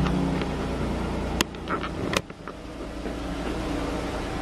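A Jeep SUV's engine idling with a steady low hum, which drops away about a second and a half in with a sharp click; a second click follows shortly after.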